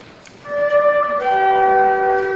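A flute trio starts playing about half a second in: first one held note, then the parts spread into a sustained chord of several notes a little past one second.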